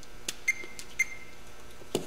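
Fluke 87 digital multimeter chirping short high beeps, twice about half a second apart, as its MIN MAX mode records new peak readings of the voltage induced in a wire coil by a passing magnet. Light handling clicks around it, the sharpest just before the end.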